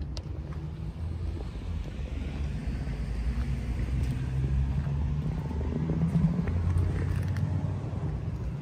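Low, steady motor-vehicle engine rumble that grows louder through the middle and eases off near the end.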